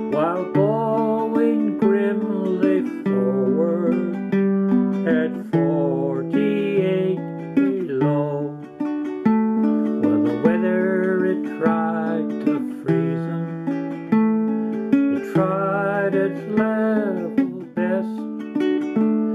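A man singing a folk song with vibrato over his own strummed ukulele, the strumming steady throughout.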